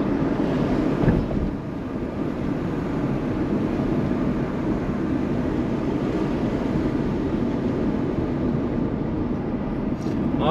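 Steady road and engine noise of a car being driven along a city street, heard from inside the cabin.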